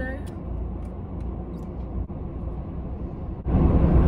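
Low steady rumble inside a car cabin, with a few faint clicks. About three and a half seconds in it suddenly grows louder and stays there.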